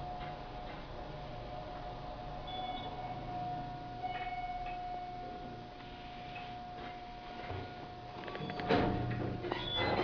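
Kone elevator car travelling with a steady, thin whine inside the cab that stops about eight and a half seconds in as the car arrives, followed by the clatter and rush of the doors sliding open.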